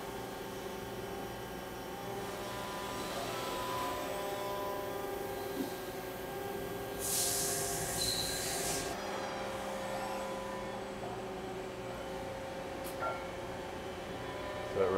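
Industrial robot arm and CNC lathe cell running: a steady whirring hum with several fixed tones as the robot moves a part. About seven seconds in, a hiss lasts about two seconds.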